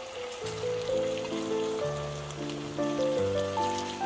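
Background music with a melody of held notes over a bass line, over the sizzle and crackle of pork pieces frying in hot oil in a wok.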